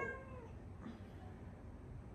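A pet cat meowing faintly.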